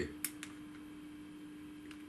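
Small curved parchment-craft scissors snipping through perforated parchment paper during pico cutting. There are two short, light snips close together about a quarter and half a second in, and a fainter one near the end.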